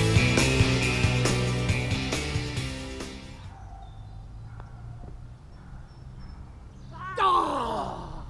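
Rock music that cuts off about three and a half seconds in, leaving a quiet open-air background. Near the end comes a loud, drawn-out groan that falls in pitch, a reaction as a putt rolls up just past the cup.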